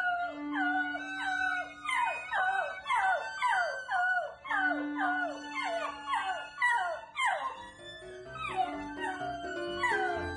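Golden retriever puppy howling in a quick series of short cries, each sliding down in pitch, about two a second, over background music.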